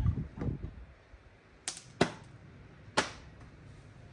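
Three short, sharp clicks: two close together about one and a half seconds in, and a third about a second later, after a brief mutter of speech at the start.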